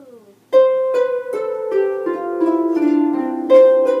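Two harps played together: a steady run of plucked notes, starting about half a second in, each note ringing on under the next.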